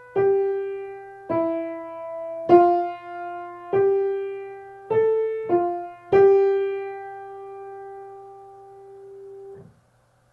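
Piano playing a slow single-note melody in C major, one note at a time, each struck note fading away. The last note is held for about three seconds and then stopped short near the end.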